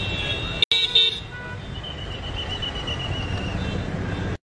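Vehicle horn tooting about a second in, then a trilling whistle, over the steady noise of slow-moving traffic and a crowd on the road.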